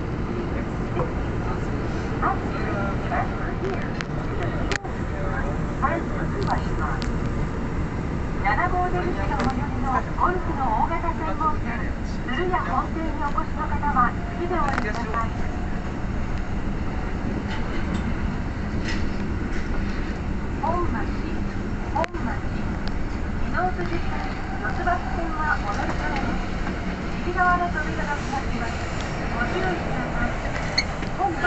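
Subway train running through a tunnel, heard from inside the front car: a steady low rumble of wheels and running gear. Indistinct voices come and go over it.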